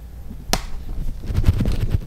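Handling noise from a hand-held camera being turned around: one sharp click about half a second in, then a run of quick knocks and rubbing with a low rumble.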